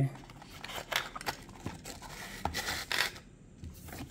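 Clear plastic clamshell packaging being handled: scattered clicks and crinkles, with a longer rustle about two and a half seconds in.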